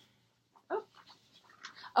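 A woman's wordless "oh" exclamations, each falling in pitch: a short one a little way in, and a louder, drawn-out one right at the end. Faint soft clicks and rustles in between.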